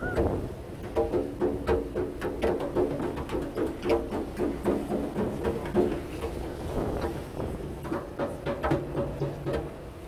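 Music with an even beat of about three a second and short repeated notes.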